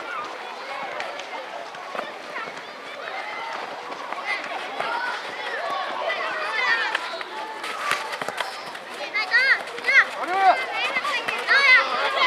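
Several children shouting and calling out over one another during a youth football match, high-pitched voices that grow louder and more frequent in the last few seconds.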